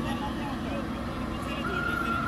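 JCB backhoe loader's diesel engine running steadily as the backhoe arm digs soil. A high steady whine joins near the end.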